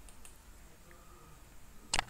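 Faint background hiss, then a single sharp click near the end, in time with a mouse-click cursor pressing an on-screen subscribe button.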